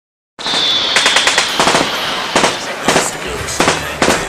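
A fast rattle of sharp bangs, then single bangs about half a second apart, over a loud hiss with a high steady whine during the first second and a half.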